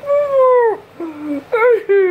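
Long, drawn-out high-pitched vocal cries: one held call of about three-quarters of a second that falls away at its end, followed by shorter, lower, wavering calls.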